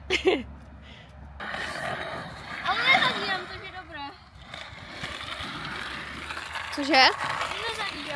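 Skateboard wheels rolling on an asphalt pump track, a steady rough rumble that starts about a second and a half in. Short high voice calls are heard near the start, around three seconds in and near the end.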